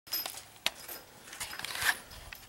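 Light metallic clinks and a sharp tap of small hand tools at a workbench. Near the end comes a denser run of rustling and knocks as the camera is handled.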